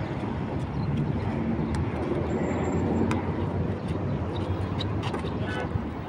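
Steady rumble of road traffic, with a faint tick or two.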